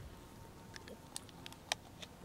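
Faint, scattered clicks and crinkles of a plastic water bottle being handled during a drink, the loudest a little past halfway.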